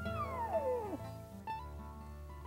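The high whistle of a bull elk's bugle slides steeply down in pitch and dies away about a second in. Background music plays throughout.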